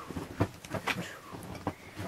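Light rustling and a few short soft knocks from handling a plush toy and the camera on a bedspread.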